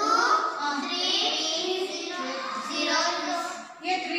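A class of children chanting together in unison, in a drawn-out, sing-song voice.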